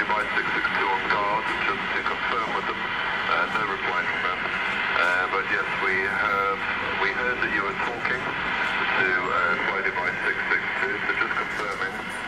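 Indistinct speech throughout, people talking without clear words.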